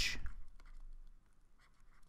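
Stylus scratching on a drawing tablet as a word is handwritten: a few short, faint strokes in the first second, then stillness.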